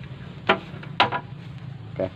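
Two short, sharp clicks about half a second apart, over a steady low hum.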